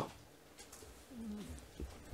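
A quiet pause with only room tone, and a faint, short, low hum that bends in pitch, like a murmured 'mm', about a second in.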